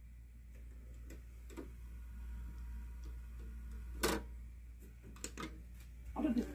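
Mechanical clicks from a VHS VCR starting a tape, over a faint steady hum: a few light clicks, a sharp loud one about four seconds in, and a quick cluster of clicks near the end.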